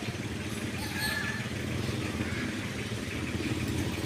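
Small motorcycle engine idling steadily, with a quick rapid pulse.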